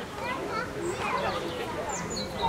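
Background chatter of a crowd of onlookers, with several children's voices talking and calling over one another.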